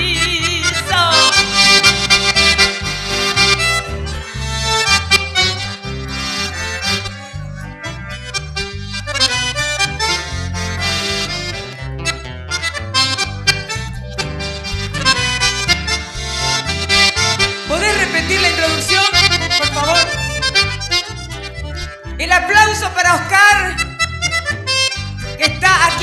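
Live folk band playing an instrumental passage: an accordion carries the melody over strummed acoustic guitars and keyboard, with a steady bass beat.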